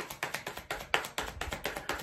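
A deck of tarot cards being shuffled by hand: a rapid, uneven run of soft card clicks and taps.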